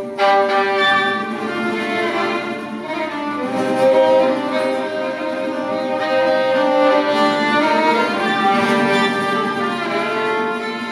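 Acoustic violin playing a slow melody in long held notes over a Spanish guitar accompaniment, played live by a violin-and-guitar duo.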